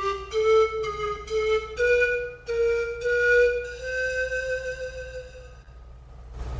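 A 22-pipe Grand Tenor pan flute in C playing a short phrase of separate breathy notes that climb gently, ending on a long held note that stops near the end.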